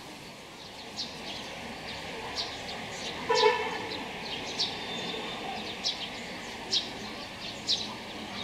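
Small birds calling outdoors: short, high chirps about once a second over steady background noise, with one louder pitched sound about three seconds in.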